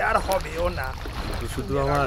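Men's voices talking in conversation, quieter than the narration, over a background ambience of a boat on water.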